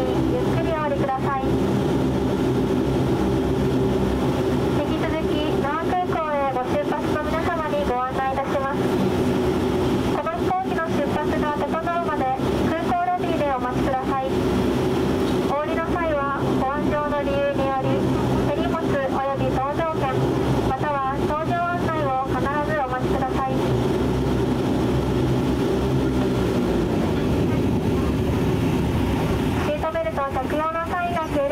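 Cabin sound of a DHC-8 Q400's Pratt & Whitney PW150A turboprops running at taxi power: a steady drone made of several tones. A voice speaks over it in several stretches, and the lowest tones fall away near the end.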